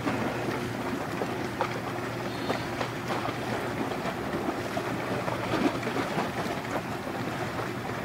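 Large container ship passing close: a steady low engine drone under the continuous rush and splash of its bow wave.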